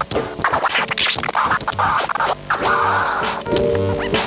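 Vinyl record scratching on a turntable: the record is pushed back and forth by hand while the mixer's fader chops it into quick, stuttering cuts. It plays over a backing beat with regular bass hits and pitched notes.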